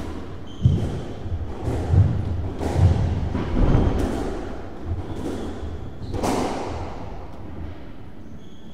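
A squash rally: a string of sharp knocks from the ball being struck by the rackets and hitting the court walls, about one a second, each echoing in the court, with the last strike a little after six seconds in.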